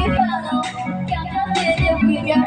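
A karaoke backing track with a steady beat, and a girl singing along through the microphone.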